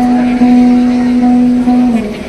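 Live music: a long held sung note, steady in pitch and dipping slightly near the end, over a ukulele.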